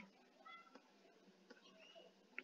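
Near silence: room tone, with a faint, brief high-pitched tonal sound about half a second in.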